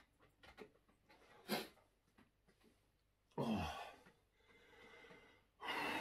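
A man's heavy, pained breathing: a short sharp breath about a second and a half in, then two long sighing exhales that fall in pitch into a groan. The second, near the end, is the loudest. It is the reaction to the burn of an extremely hot scorpion-pepper sauce.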